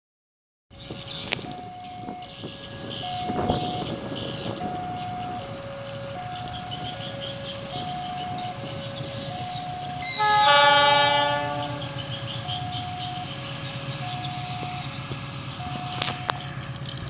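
A diesel locomotive's horn sounds once, loud and sudden, about ten seconds in, and fades after a second and a half. Under it, a two-tone warning signal alternates steadily, about one tone a second, as a level-crossing alarm does while a train approaches.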